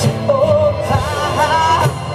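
Live rock-blues band with a man singing over acoustic guitar and drums. His voice holds a note, then climbs higher and wavers through the second half.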